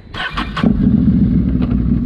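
Can-Am Renegade X mr 1000R's Rotax V-twin engine starting: a brief crank about half a second in, then catching and running at a steady idle.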